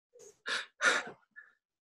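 A man's sharp gasping breaths, three short ones in quick succession within the first second.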